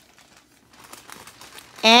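Faint rustling and crinkling of a long paper store receipt being handled and moved along in the hand.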